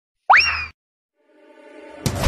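A short cartoon-style 'boing' sound effect: one quick upward-gliding tone lasting under half a second. Near the end, electronic intro music fades in and grows louder.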